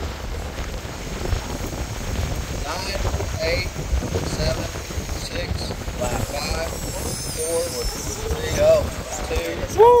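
Strong wind buffeting the microphone, a loud, steady low rumble throughout. Voices talk faintly through it from about three seconds in, with a shout near the end.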